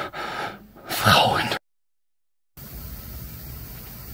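A person's voice, without words that can be made out, that cuts off abruptly about a second and a half in. After a second of dead silence, a steady low hum with hiss sets in.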